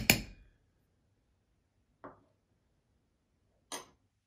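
A metal spoon clinking against a stainless steel French press: the last few quick strikes of stirring at the start, then a single clink about two seconds in and another near the end.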